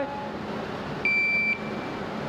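Electronic shot timer giving its start beep: one steady, high-pitched tone lasting about half a second, about a second in. It is the signal for the shooter to draw and fire.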